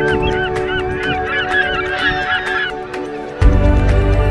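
A flock of birds calling, many short overlapping calls for the first two and a half seconds, over soft background music. Near the end a deep, loud low note swells in the music.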